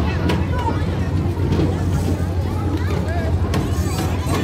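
Fairground crowd chatter, scattered voices over a steady low hum of machinery.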